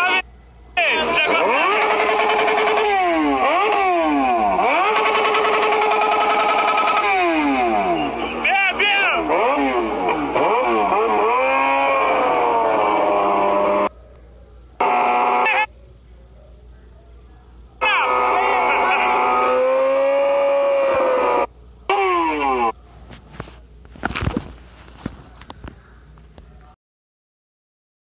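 Motorcycle engine being revved hard again and again: each rev climbs and falls away within about a second. It comes in several separate loud stretches with quieter gaps between them, and there is a sharp click near the end.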